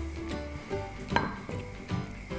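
Soft background music over a silicone spatula scraping sauce out of a frying pan into a glass bowl, with two light clinks, one about a second in and one near the end.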